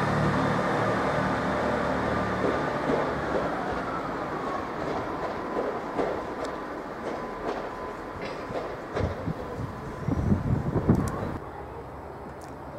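Class 158 diesel multiple unit pulling into the platform and slowing, its diesel engines humming and fading, with a thin whine falling in pitch early on. Wheels then click and knock over rail joints, and a burst of low rumbling near the end cuts off suddenly.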